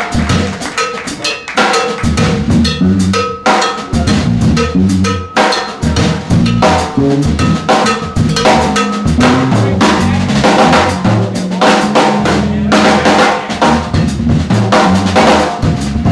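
Drum kit played busily in a live small jazz combo, with rapid rim and cymbal hits over pitched notes from the rhythm section, with no pause.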